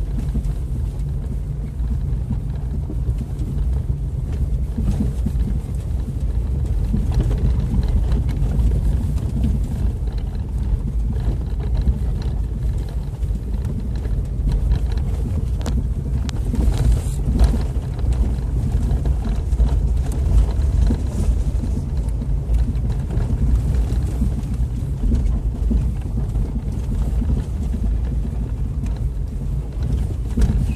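Jeep's engine and drivetrain running with a steady low rumble, heard from inside the cabin as it crawls over a rough, rocky track, with a few short knocks and rattles from the bumps.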